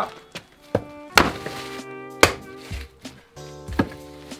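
Fiskars X27 splitting axe chopping firewood on a wooden block: two sharp chops about a second apart, with a few lighter knocks around them, over background music.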